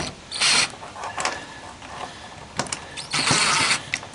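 Cordless drill driving screws in two short bursts, a brief one shortly after the start and a longer one near the end.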